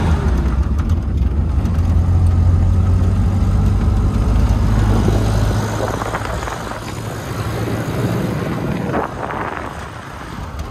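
Toyota Hilux Vigo pickup driving on a dirt track, heard from on board: a steady low engine and road rumble that drops away about halfway through, leaving a rougher rush of wind and tyre noise.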